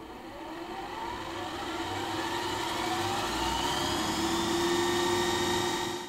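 A rising riser sound effect: a swell of whooshing noise with several upward-gliding tones over a steady hum, growing steadily louder and then cutting off suddenly at the end.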